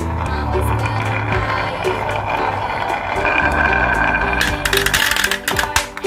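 Background music playing over marbles rolling down a carved wooden wiggle track, with a rapid clatter near the end as they drop into a plastic toy car.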